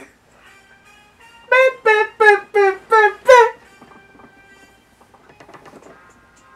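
A man laughing loudly in six quick, high-pitched bursts, each dropping in pitch, over faint background music.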